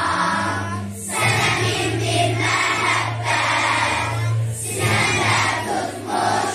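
A children's choir of girls and boys singing together, with short breaks between phrases about a second in and again just before five seconds.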